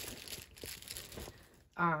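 Soft, irregular crinkling and rustling of packaging material being handled, with small crackles, ending in a brief spoken 'um'.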